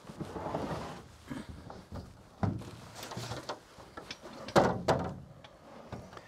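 A removable aircraft seat being stowed through a baggage hatch: rustling of its padded cover, then a few separate knocks as its metal frame bumps the compartment. The loudest knock comes about four and a half seconds in.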